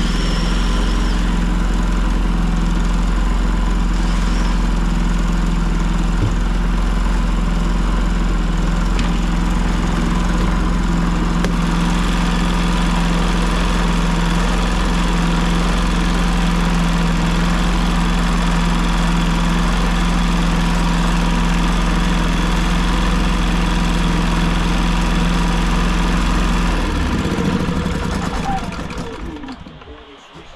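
Predator 3500 inverter generator's small single-cylinder four-stroke engine running at a steady speed to warm the oil before an oil change. Near the end it is shut off and runs down to a stop.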